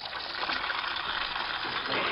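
Goat's milk squirted by hand into a metal cup part full of frothy milk: a steady hiss of liquid spraying into foam.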